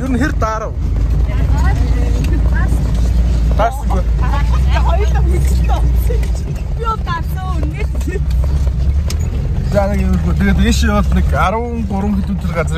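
Steady low vehicle rumble heard inside a van's cabin, under people talking and laughing.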